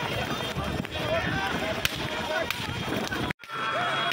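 Men shouting and calling to a pair of racing bullocks pulling a cart, over scattered sharp knocks from hooves and running feet on a dirt track. The sound drops out abruptly for a moment near the end.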